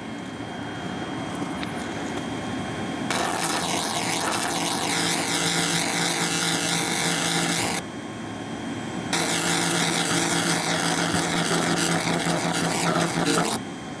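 SFX BLC-2000 2000 W fiber laser cleaner firing at 70% power, burning spray paint off wood: a loud hiss over a steady hum, in two bursts of about four to five seconds with a short break between them. The light-coloured paint takes the beam poorly, so the beam has to dwell on the spot to get through it.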